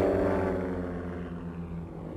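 Propeller airplane engine droning steadily, fading away and sinking slightly in pitch as it recedes.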